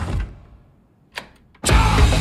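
A short click from the stereo's controls in a near-quiet gap, then loud heavy metal with electric guitar blasting in suddenly from the speakers about a second and a half in.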